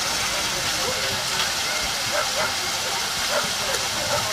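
Steady rushing hiss with faint distant voices talking over it.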